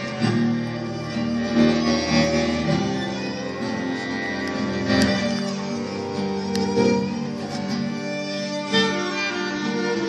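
Instrumental passage of a live acoustic ensemble: violin and cello bowing sustained lines over plucked and strummed acoustic guitar.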